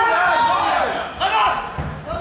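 Voices calling out from ringside in a large hall, with a thud about a second in.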